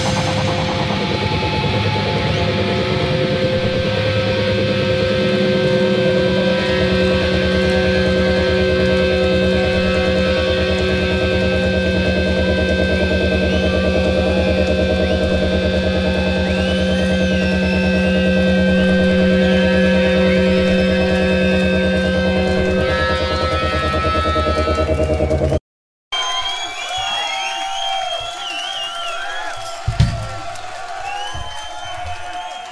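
A heavy rock band's electric guitars and bass holding a long, ringing final chord with feedback, which stops about 25 seconds in. After a sudden half-second cut to silence, a live crowd cheers and whistles.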